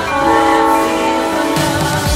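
Diesel locomotive air horn sounding one held, multi-note blast of about a second and a half, which stops shortly before the end, over background music.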